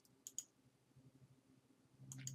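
Three faint computer mouse clicks within the first half second, then near silence.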